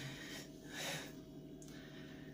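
A man's two short, breathy exhalations, one at the start and one about a second in.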